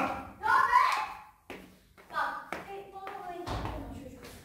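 Voices calling out without clear words, mixed with a few sharp taps of footsteps going down wooden stairs.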